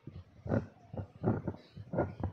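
A microphone on a stand being handled and adjusted, giving a run of about six irregular bumps and rubbing noises.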